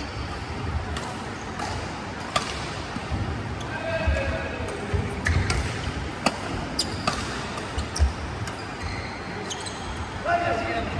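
Badminton rally: sharp racket-on-shuttlecock smacks, single hits spread a second or more apart, from this court and neighbouring ones, over thudding footsteps on the court and players' voices.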